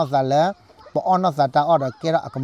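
A man speaking close to a clip-on microphone: one phrase, a brief pause about half a second in, then more speech.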